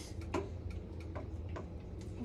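A few light clicks of a metal utensil against a stainless steel stockpot, four taps about half a second apart, over a low steady hum.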